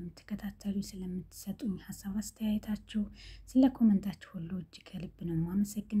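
Speech only: a voice talking steadily, with no other sound standing out.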